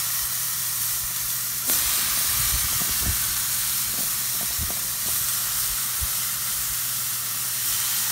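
Raw seasoned chicken breasts sizzling on the hot grates of a gas grill: a steady hiss that swells slightly about two seconds in, with a low steady hum underneath.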